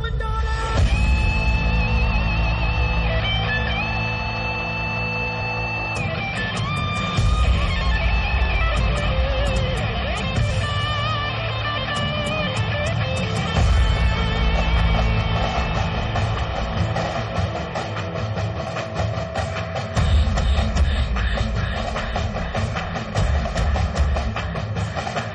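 Live band music played through a stadium PA: long held lead notes over heavy bass in the first few seconds, then electric guitar with bass and a steady drum beat.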